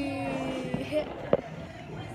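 A child's voice holding a drawn-out, steady 'uhhh' for under a second, followed by a single sharp click or tap a little over a second in.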